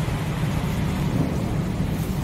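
Steady low rumble of background noise with no distinct event.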